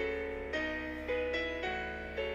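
Solo piano music playing a steady, measured accompaniment, with new chords struck about twice a second. A low steady hum runs underneath.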